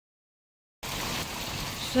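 Dead silence, then about a second in steady rain cuts in abruptly, an even hiss of rain falling on a garden and a swimming pool.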